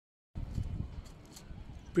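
Low rumbling microphone noise with soft irregular thumps, starting about a third of a second in and strongest in the first half second.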